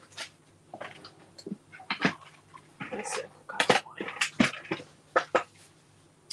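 Paper being handled on a work surface: a string of short, irregular rustles and scrapes as paper strips are moved and positioned.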